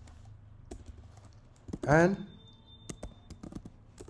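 Typing on a computer keyboard: an uneven run of key clicks.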